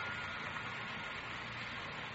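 Faint steady hiss and background noise of an old radio-broadcast recording, with no distinct sound events.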